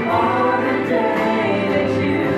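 A small mixed group of singers performing a worship song in harmony into handheld microphones, holding long sustained notes.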